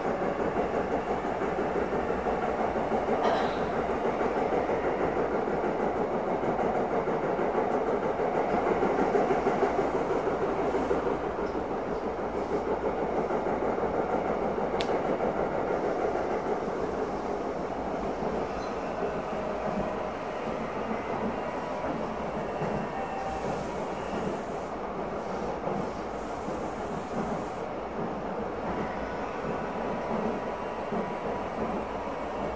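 Electric train running, heard from inside the carriage: a steady rumble of wheels on the rails with a few faint clicks, easing slightly in the second half.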